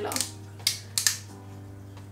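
Screw cap of a small vanilla extract bottle being twisted open by hand: a few sharp clicks, one a little over half a second in and two close together about a second in.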